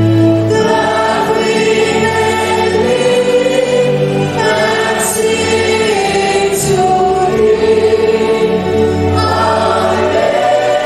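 Choir and congregation singing a hymn in long held notes, the pitch moving every second or so over a steady low bass.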